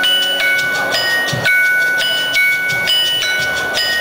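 Live band music in a sparse passage: high, ringing bell-like notes struck about every half second, each sustaining into the next, with little bass underneath.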